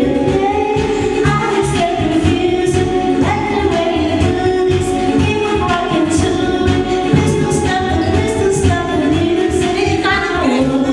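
A woman singing karaoke into a corded microphone over a pop backing track with a steady beat.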